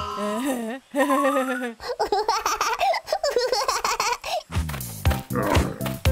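Wordless cartoon character voice sounds, giggly and sing-song, over children's background music. A steady beat comes in about four and a half seconds in.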